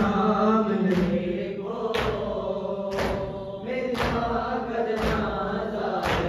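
A group of men chanting a Shia noha (lament) in unison, with the whole group beating their chests in time, about one beat a second.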